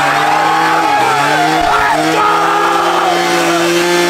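Motorized drink blender running with a steady droning pitch that dips briefly about a second in, while a crowd shouts and cheers around it.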